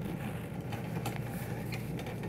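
Steady low room hum with a few faint clicks and knocks as a light stand is handled.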